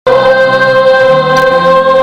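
A stage chorus of young singers holding one long, steady note in a musical number, with a lower note joining about a second in. The sound starts abruptly as the clip begins.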